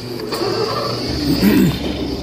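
Arcade room noise: a steady high electronic tone and low hum from the machines, with a short pitched sound that rises and falls about a second and a half in.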